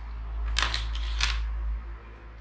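Plastic storage cover of a DJI Mavic 3 Classic drone being unclipped and pulled off the folded drone. There are two short spells of clicking and scraping, about half a second in and again just after a second, over low handling rumble.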